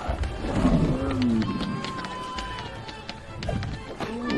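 Film soundtrack of an animated dragon: music with a dragon's pitched, bending call about half a second to a second and a half in, a long held tone after it, and many quick clicks scattered throughout.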